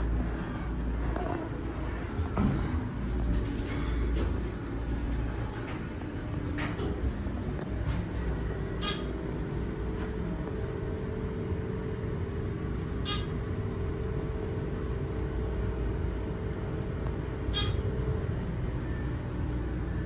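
Dover hydraulic elevator car rising: a steady low rumble, with a steady hum coming in about six seconds in. Three sharp, evenly spaced clicks sound in the second half.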